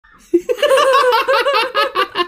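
Loud, high-pitched laughter: a quick unbroken string of 'ha-ha-ha' sounds that starts a moment in.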